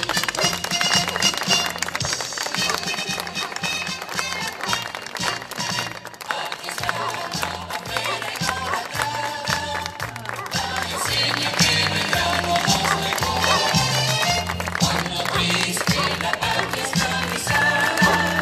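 Music played on an electronic keyboard through outdoor PA speakers, with a bass line stepping from note to note.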